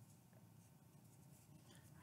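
Near silence: room tone with faint soft handling sounds as toothpicks are pushed into marshmallows.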